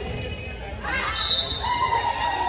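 A high voice rises, then holds one long call near the end, echoing in a school gymnasium.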